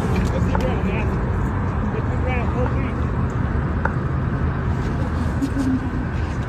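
Steady low rumble of a car's engine and tyres heard from inside the cabin, with faint, indistinct voices over it.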